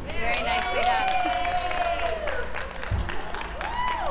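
A few people cheering with a long, drawn-out "woo" over light clapping, and a short rising-and-falling exclamation near the end.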